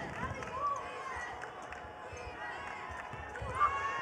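Faint basketball arena ambience during live play: a low crowd murmur with scattered distant voices and sounds of play from the court.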